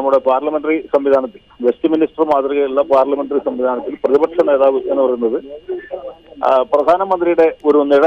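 Speech only: a man talking continuously in a thin, phone-like voice with little high end.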